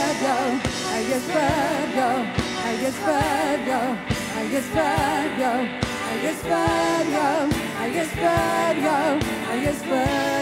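Live church worship band: women's voices singing a song into microphones, their held notes wavering with vibrato, over a drum kit keeping the beat.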